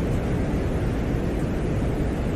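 Venera 13 lander's microphone recording from the surface of Venus played back: a steady hiss with a low rumble and no distinct events.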